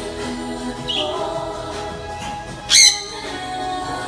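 Background music, over which a pet parrot gives a short chirp about a second in and then one loud, brief squawk near the end.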